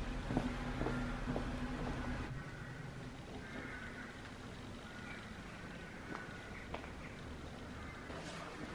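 A motor vehicle's engine running steadily at low revs, dying away after about two seconds. After that there is quiet outdoor street ambience with a few faint footsteps on the lane.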